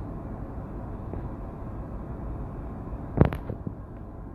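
Steady low background noise of a jet cockpit, with one sharp knock about three seconds in as the handheld phone is turned around.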